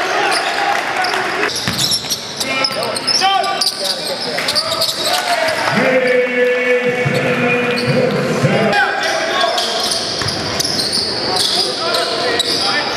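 Live gym sound of a basketball game: the ball bouncing on the hardwood, sneakers squeaking and spectators' voices echoing in the hall. A steady low tone sounds for almost three seconds midway through.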